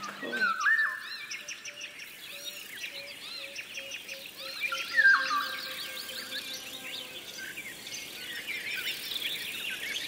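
Birdsong: many overlapping high chirps and trills, with a steady run of short repeated notes lower down. Two louder long whistled notes stand out, one just under a second in and one about five seconds in.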